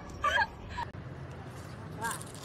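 A young woman's short laugh, one quick burst just after the start, then only a faint steady outdoor hum.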